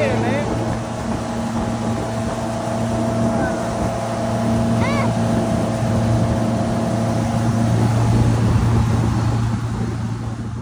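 Wakesurf boat under way: its inboard engine hums steadily over the rush of the churning wake, getting somewhat louder late on.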